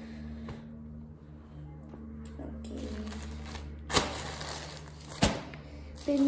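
Fabric rustling as a dress is handled, over a steady low hum, with two sharp knocks or taps a little over a second apart, about four seconds in.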